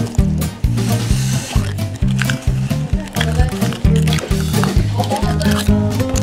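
Background music with a steady beat and a bouncing bass line.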